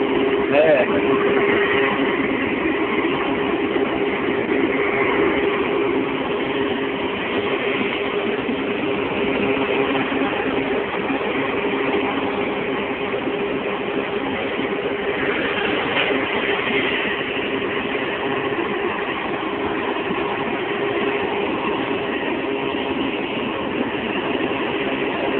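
Drilling rig's engines running steadily: a constant low hum under a wash of noise.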